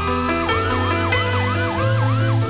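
A hip-hop instrumental beat with a bass line and a siren sound effect. The siren finishes a slow rising wail and then switches to a fast yelp of about four swoops a second.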